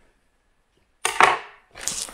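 Cardboard box being handled as a book is pulled out of it: after a moment of dead silence, two short scraping rustles, the first about a second in and the louder, the second near the end.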